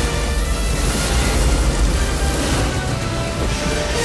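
Loud film-soundtrack music mixed with a continuous low, rumbling roar of a fiery explosion.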